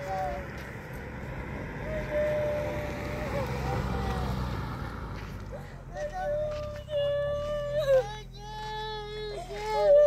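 A car passes on the road, its tyre and engine noise swelling and fading through the first half. Over it and after it, a voice makes long, held wailing cries, each pitch drawn out for a second or more, like a child crying.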